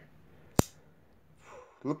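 Kershaw Leek pocket knife's assisted-opening blade snapping open with one sharp click about half a second in.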